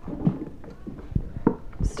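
A cardboard box of powder being shaken and tapped over the mouth of a model volcano, making irregular soft knocks and rustles.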